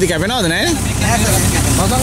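A backhoe loader's diesel engine idling steadily, with a man's voice calling loudly over it in the first second.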